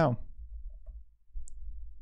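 Low, steady background hum, with a single short, faint computer click about a second and a half in.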